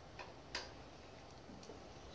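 Quiet room tone with two faint clicks about a quarter and half a second in, and a couple of fainter ticks later.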